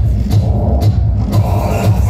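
Live band playing loud electronic music through a club PA, a heavy, regular bass beat underneath. The high end drops out briefly about a second in.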